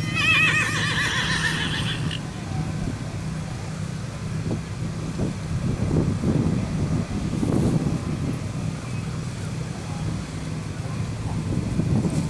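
A horse whinnies once at the start, a high, wavering call lasting about two seconds. A steady low hum runs underneath.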